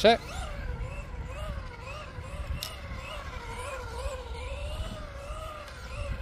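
Tamiya TT02 radio-controlled car's electric motor whining, its pitch rising and falling in repeated waves as the throttle goes on and off through tight turns, over a low rumble.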